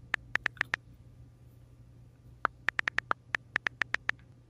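Keystroke clicks of a phone's touch keyboard being typed on: a quick run of about six, a pause of over a second, then a faster run of about a dozen.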